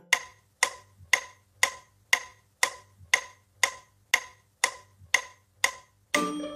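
Electronic metronome clicking steadily at about two beats a second, twelve short, even woodblock-like ticks.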